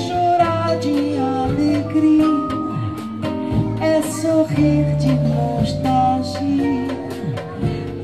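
Live bossa nova band of guitar, bass, vibraphone, percussion and drums playing an instrumental passage between the vocal lines, with sustained ringing notes over a steady bass line and light percussion.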